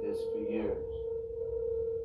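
A steady pure tone held at one unchanging pitch, with a voice from a background recording briefly over it in the first moment.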